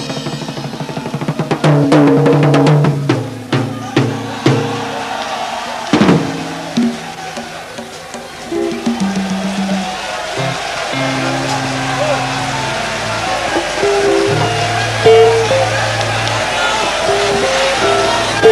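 Congolese rumba band music: rapid snare drum rolls and fills in the first few seconds, a single sharp hit about six seconds in, then long held low notes with a voice over them.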